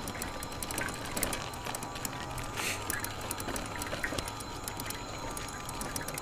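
Electric trike riding along a rough paved trail: a stream of small clicks and rattles from the trike, over a faint steady whine.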